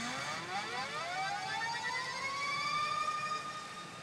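A pachinko machine's electronic sound effect: a stack of tones that sweeps slowly upward over about three seconds and levels off near the end. It is a build-up cue while the machine decides whether the bonus add-on (上乗せ) count goes up.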